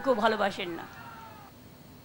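A woman's voice at a handheld microphone trailing off in a drawn-out phrase that falls in pitch, ending within the first second. After that only a low background hush remains.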